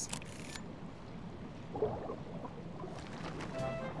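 A short camera shutter sound effect right at the start as the picture is snapped, then soft background music over a low, steady underwater wash.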